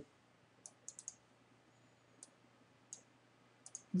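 Faint, scattered clicks of a computer mouse, about eight in all, some in quick pairs like double-clicks.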